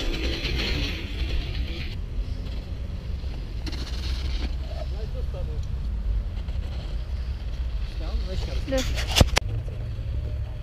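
Steady low rumble of wind buffeting the microphone of a camera carried on a moving bicycle over snow, with a sharp click about nine seconds in.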